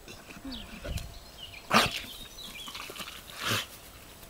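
A dog making two short, sharp sounds about a second and a half apart, the first the louder.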